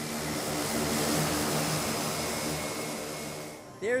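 Small propeller aircraft's engine running close by: a steady hum with a rushing hiss of air, swelling over the first second and fading out near the end.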